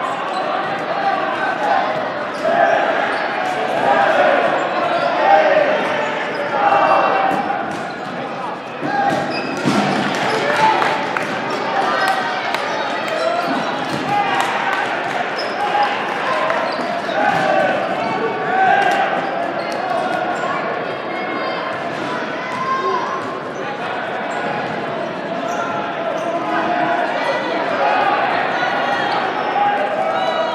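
Dodgeballs thrown and bouncing, with many sharp smacks on the gym floor and walls, echoing in a large hall. Indistinct shouting from players and onlookers runs underneath.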